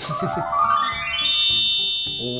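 Toy voice-changer megaphone sounding an electronic effect: a buzzy tone with many overtones that slides upward for about a second, then holds steady.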